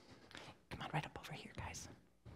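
Faint, whispered speech, too quiet to make out, about halfway through.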